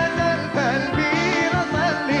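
Live band playing a Yemenite-style Middle Eastern song: a male voice sings a winding, ornamented melody over a steady bass and drum beat.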